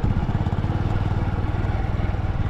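Motorcycle engine running at a steady speed while being ridden, heard from on the bike as an even low pulsing.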